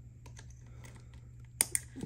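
Small light clicks and taps of tweezers working tiny screws out of an iMac's metal display frame, with two sharper clicks near the end.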